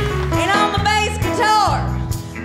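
Live rock band playing, with bass and drums keeping a steady beat under a lead line that swoops down in pitch.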